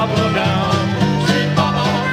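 Jug band music: strummed banjo and guitar over a steady beat, with a wavering reed or voice-like melody line, in a short gap between sung lines of the refrain.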